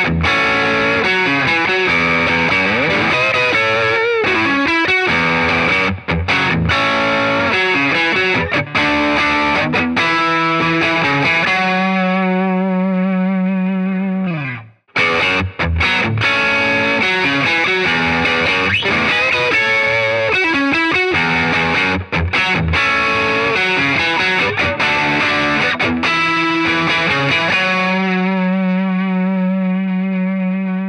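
Telecaster-style electric guitars on the neck pickup, played through a low-gain bluesbreaker-style overdrive pedal into a Fender Deluxe Reverb amp with a touch of reverb. The same lick is played twice, each time ending in a held chord that rings out. The second pass, after a short break about halfway through, is on a different guitar.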